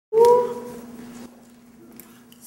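A woman's voice holding one long note that starts abruptly, bends up slightly, then fades out after about a second, with a faint steady hum underneath.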